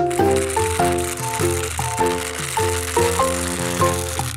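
Plastic toy helicopter running, its motor and spinning rotor making a steady rattle, over a bright electronic tune of quick short notes.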